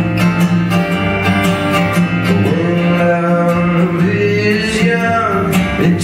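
Acoustic guitar strummed steadily in a live solo folk song, with a man's voice holding long sung notes over the chords.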